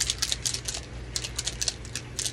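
Rapid, irregular light clicking and rattling as a small plastic alcohol ink bottle is handled and shaken, several ticks a second.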